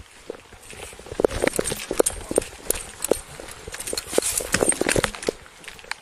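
Hurried footsteps on pavement, about two to three steps a second, loudest from about one second in until near the end.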